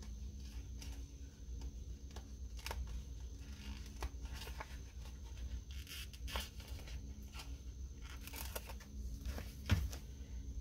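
Paper stickers being peeled from a sticker sheet and handled: quiet rustling and tearing with scattered small clicks, and a single thump near the end as a sticker is pressed down onto the planner page.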